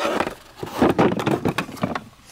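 Handling noise from hard plastic vacuum attachments and their stand being moved: a quick run of knocks, clicks and scrapes after a brief lull.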